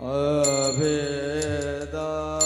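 A man's voice singing one long held devotional note with a slightly wavering pitch, in the chanted style of a Varkari kirtan. A bright metallic ring joins about half a second in.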